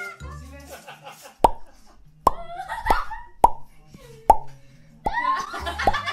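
A series of about six sharp cartoon pop sound effects, irregularly spaced from about a second and a half in to near the end, over background music with voices and laughter.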